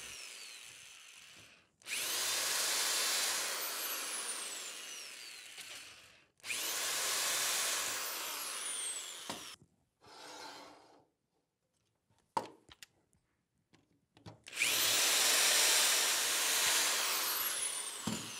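Electric drill with a 1/8-inch bit drilling out the stamped pins that hold a corner key in an aluminium screen-window frame: three runs of a few seconds each, the motor whining up to speed at the start of each. Between the second and third runs there is a short pause with a few light clicks.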